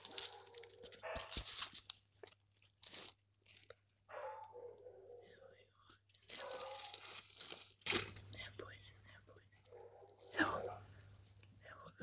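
Quiet crunching and rustling of dry soil, twigs and leaves around a hedgehog curled into a ball while ticks are picked from among its spines, with soft murmured speech at times.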